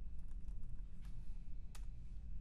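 A few separate computer keyboard keystrokes and clicks, heard over a low steady hum.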